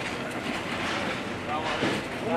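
Busy wholesale produce market ambience: a steady noisy din of work with voices in the background.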